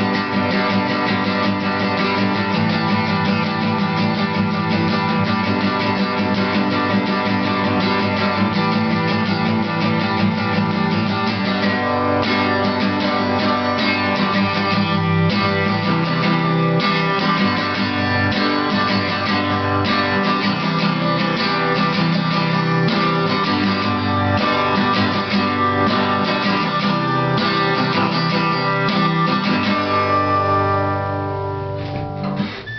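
Solo acoustic guitar strummed continuously at a steady level, an instrumental piece played without singing.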